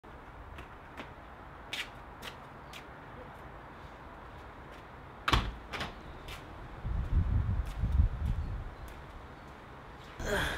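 A white uPVC patio door being unlatched and opened: a sharp clack of the handle and latch about five seconds in, followed by two lighter knocks, with a few faint ticks before it. Then a low rumble for a second or two.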